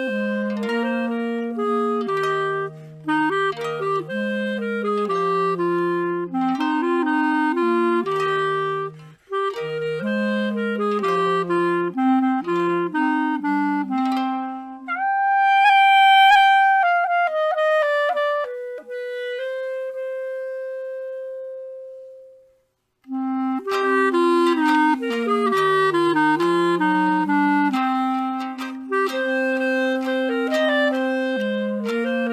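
Clarinet music in two voices, an upper melody over a lower moving line. About fifteen seconds in the lower line drops out and the upper one holds a high note with vibrato, slides down into a long held note that fades away, and after a short break both lines start again.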